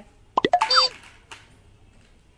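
A quick run of sharp plastic clicks and clacks with a brief squeak falling in pitch, about half a second in, as a Beyblade ripcord launcher is handled and a spinning top is picked up from a concrete floor.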